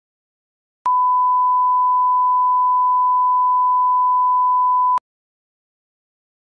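A 1 kHz line-up tone, a steady pure beep about four seconds long that starts and stops abruptly. It is the reference tone played with colour bars at the head of a video tape for setting audio levels.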